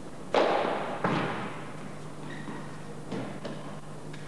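Two sharp impacts about a second apart, each trailing off in a ringing echo, then a couple of faint taps: a padel ball striking racket and glass walls during a rally.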